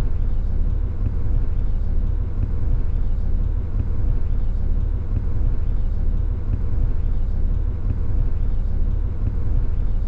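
Steady low rumble of a moving road vehicle's engine and tyres heard from inside the cabin, with a faint steady hum above it.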